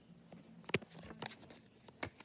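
Soft handling noises: a few light taps and rustles of fingers moving paper sticky notes on a cloth bedsheet, the sharpest about three quarters of a second in.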